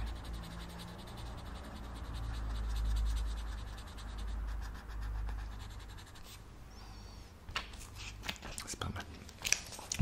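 Drawing on paper close to the microphone. Through the first half there is scratching and rubbing with a low rumble that swells and fades, and in the second half a series of light, sharp taps and clicks.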